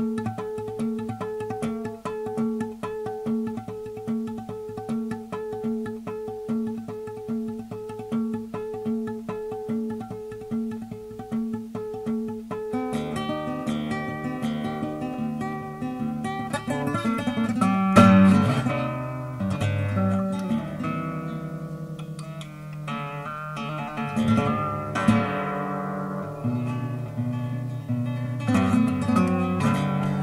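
Solo improvised guitar. For about the first thirteen seconds it plays a fast, repeated picked figure on the same few notes, then breaks into denser, louder plucking and strumming with sharp accented strikes.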